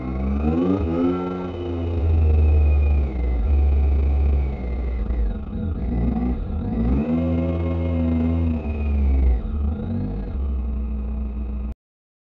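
Motorcycle engine heard from the bike's own dash-cam, its pitch rising as it accelerates in the first couple of seconds and again about seven seconds in, over a heavy low wind rumble on the microphone. The sound cuts off suddenly near the end.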